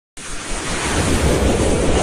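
Intro sound effect: a rushing whoosh of noise over a deep rumble, swelling in loudness through the first second and then holding.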